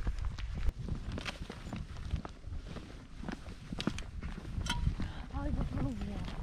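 Footsteps on a paved trail, heard as scattered short clicks, over a rumble of wind and handling noise on the microphone. A voice begins near the end.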